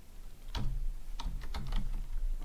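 Typing on a computer keyboard: a quick run of short, unevenly spaced keystrokes entering a command.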